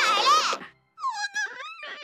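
A young woman's shouted, tearful protest that cuts off about half a second in, then a high-pitched, wavering whimpering cry.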